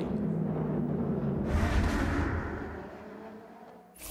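GT race car engines running at low, steady revs under caution on a wet track. About a second and a half in there is a brief rush of noise, then the sound fades out near the end.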